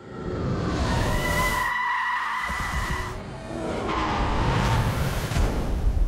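Sound effects for an AI-generated disintegration shot: a held, high cry over a rushing noise for about three seconds, then a second swell of rushing, hissing noise like pouring sand, with music underneath.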